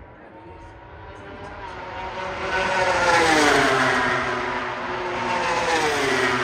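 MotoGP race bikes, high-revving four-stroke engines, passing at speed: the engine note builds and peaks about three seconds in, then drops in pitch as the bike goes by, with a second bike dropping past near the end.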